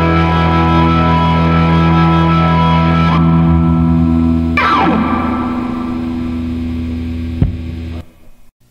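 Distorted electric guitar chord ringing out at the close of a garage-rock song. About halfway through, a quick falling slide runs down the strings, the chord then fades, and a short thump comes just before the sound cuts off.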